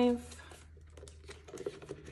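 The end of a spoken word, then faint crinkling and small clicks of paper banknotes being handled and slipped into a plastic cash envelope, growing a little busier past the middle.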